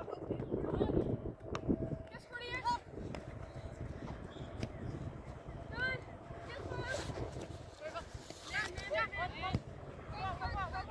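Distant shouts and short calls from soccer players across the field, with a few sharp knocks of the ball being kicked and a low wind rumble on the microphone.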